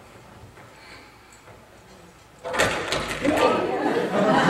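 Quiet room with a few faint ticks. About two and a half seconds in, the level jumps suddenly with a few sharp clicks, followed by indistinct voices in the room.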